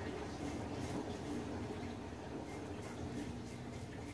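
Safety razor with a long-used blade scraping through lathered stubble on the neck and jaw in short, repeated strokes. A washing machine hums steadily underneath.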